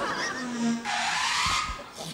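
Hearty, breathy laughter from men, wheezing with short voiced squeals, without words.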